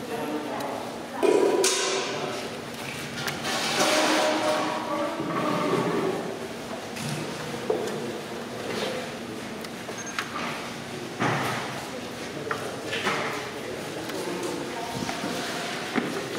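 Background voices of people talking, not close to the microphone, with a few sharp knocks and clatter, the loudest about a second in and two more around eleven and thirteen seconds in.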